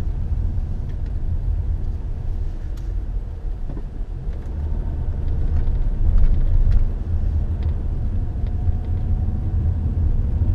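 Steady low rumble of a car driving, engine and tyre noise heard from inside the cabin, swelling slightly about six seconds in, with a few faint ticks.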